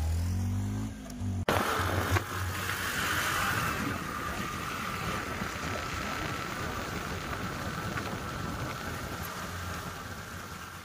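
For about the first second and a half, a two-wheeler's engine runs with its pitch gliding up, then the sound cuts abruptly. After that, steady wind rushes over the microphone of a moving scooter, with engine and road noise underneath.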